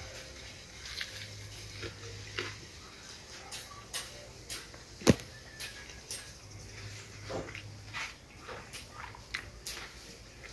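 A person chewing a mouthful of deep-fried fish, with scattered small wet mouth clicks and smacks, a sharper one about halfway through, and two low hums of about a second and a half each.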